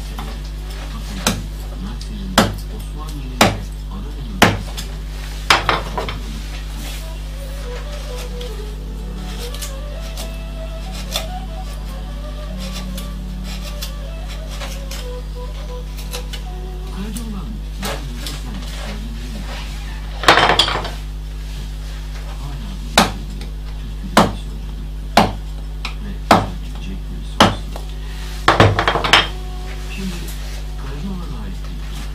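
Round carver's mallet striking a gouge into a wooden panel: sharp knocks about once a second, then a quieter stretch of hand paring, then another run of knocks about once a second near the end.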